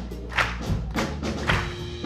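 Live jazz band playing: a drum kit struck with sticks gives sharp, regular hits about twice a second over low bass notes.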